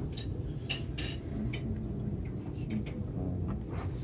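Restaurant dining-room sound: a few sharp clinks of cutlery and dishes in the first second and a half, over a steady low room hum with faint voices in the background.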